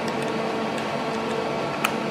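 Steady fan hum with a few soft clicks of keys being pressed on a Fanuc CNC control panel's keypad. The sharpest click comes near the end.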